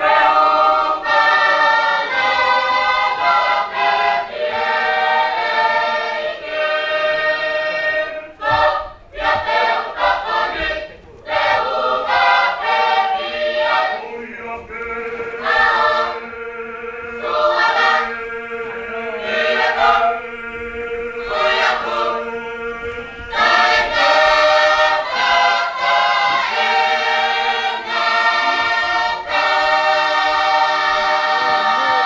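A congregation choir singing a hymn a cappella in several parts, with long held chords and a quieter middle passage where a low note is sustained under shorter phrases.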